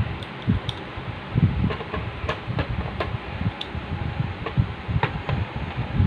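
Hard plastic toy parts being handled and fitted together: irregular clicks and light knocks as a black piece is set into the Transformers Kingdom Commander Class Rodimus Prime trailer.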